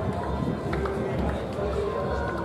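Outdoor football stadium ambience: a steady low rumble with indistinct, distant voices across the ground.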